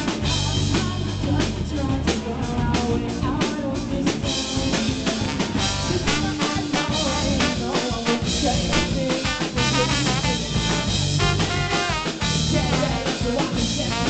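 A live rock band playing an instrumental passage: drum kit, electric guitar and bass, with a trombone playing the melody.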